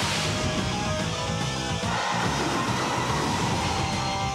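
Rock background music, with a noisy burst right at the start.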